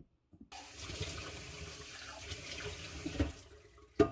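Kitchen tap turned on, water running steadily into a sink, starting about half a second in and easing off near the end.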